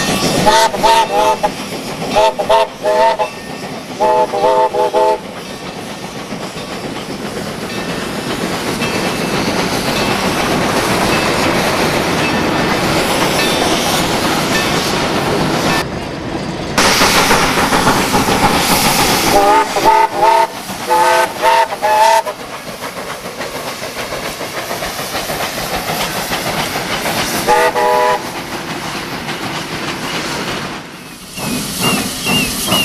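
Steam locomotive of a sugar-cane train sounding its whistle in short, several-toned blasts, three groups near the start and three more around twenty seconds in, with one last toot near the end. Between the blasts, the steady noise of the locomotive working and the cane wagons rolling.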